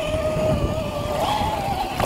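Electric motor and drivetrain of an Axial SCX10 II Jeep Cherokee RC crawler whining steadily as it wades into deep muddy water, the pitch stepping up slightly about a second in, over water sloshing.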